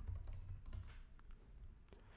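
Faint typing on a computer keyboard: a quick run of light keystrokes.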